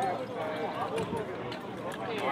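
Background voices of several people calling and talking, with no clear words.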